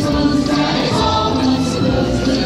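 A group of voices singing together in a show song, with musical accompaniment.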